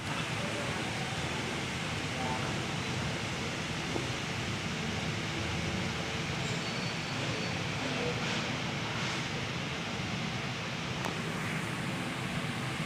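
Indistinct chatter of a gathering of people, with no words standing out, under a steady hiss.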